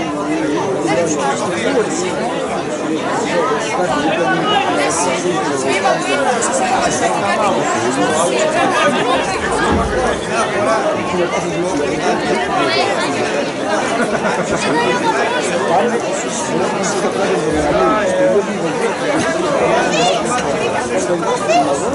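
Dense chatter of a large crowd of diners, many voices talking at once at a steady level.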